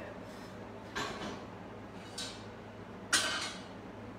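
Three short knocks and clatters of kitchen containers and utensils being handled and set down, about a second apart, the last one the loudest.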